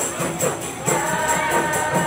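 Qasidah rebana music: rebana frame drums beating a steady rhythm while a group of voices sings, coming in on a held note about a second in.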